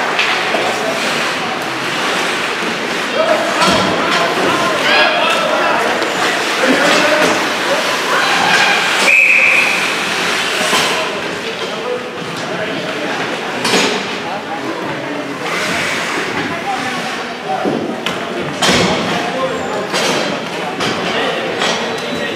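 Ice hockey rink ambience in an echoing arena: spectators chattering, a few sharp knocks from play on the ice and boards, and one short, shrill referee's whistle about nine seconds in that stops play.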